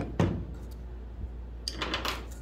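A metal air-file sanding deck knocks once against the table shortly after the start, then a brief scraping handling noise near the end, over a steady low hum.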